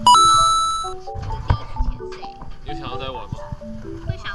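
A bright, bell-like sound-effect chime rings out at the start and fades away over about a second, over light background music with plinking melodic notes.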